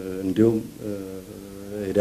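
A man's voice speaking Amharic, stretching syllables into long held vowels at a steady pitch, the longest lasting about a second in the second half.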